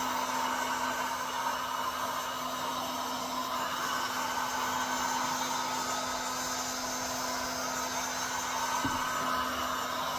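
Electric heat gun running steadily, its fan blowing hot air with a constant hum, used to heat a car tail light housing to loosen it so it can be opened.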